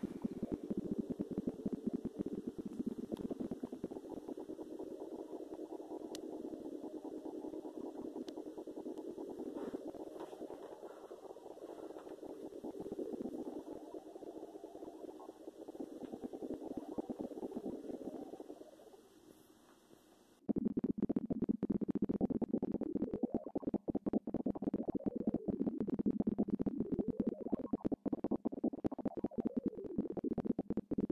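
Electronic sonification from the SNAP navigation aid: a dense cluster of synthesized tones, rapidly fluttering and shifting, that turns the depth sensor's view into sound. Pitch stands for an object's height, volume for its distance, and left–right placement comes from binaural cues. About two-thirds of the way through it fades almost to nothing, then cuts abruptly to a louder, pulsing cluster of lower tones.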